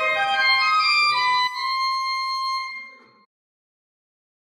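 Church organ playing the closing chord of a piece. The bass notes drop out about a second and a half in, and the upper chord is held and dies away about three seconds in.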